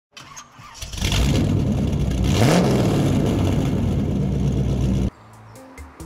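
Car engine start-and-rev sound effect over music, with one rising rev about halfway through; it cuts off suddenly near the end, leaving quieter background music.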